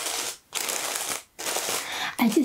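Pink tissue-paper gift wrapping rustling and crinkling under fingers, in three bursts with short pauses between.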